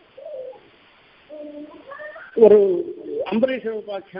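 A man speaking slowly in drawn-out syllables, with a pause of under a second early on, then louder continuous speech from a little past the middle.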